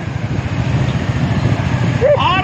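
Motorcycles running along together, a steady low rumble with no voices over it.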